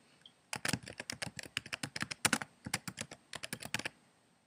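Typing on a computer keyboard: a quick, uneven run of key clicks lasting about three seconds, starting about half a second in, as a short title is typed into a text field.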